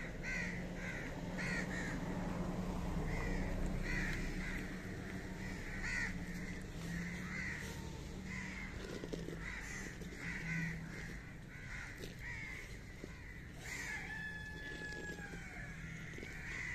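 Crows cawing over and over, about two calls a second, with a low hum underneath. Near the end there is a longer call that falls in pitch.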